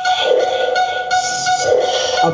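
A steady, high whistle-like electronic tone over hiss, part of the dance performance's backing track. It holds one pitch and stops near the end.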